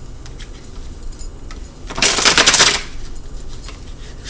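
A deck of tarot cards being shuffled: a few light card clicks, then a loud burst of rapid riffling about two seconds in, lasting just under a second.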